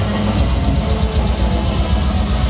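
Black metal band playing live at full volume: a dense, unbroken wall of distorted guitars, bass and drums, heavy in the low end, heard from within the crowd.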